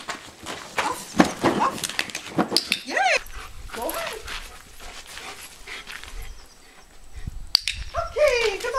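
A large dog whining and yipping in short cries that rise and fall, several times in the first half, with scuffing footsteps on the driveway.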